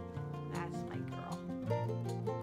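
Acoustic guitar background music, with a small dog yipping and whining briefly over it about half a second to a second and a half in.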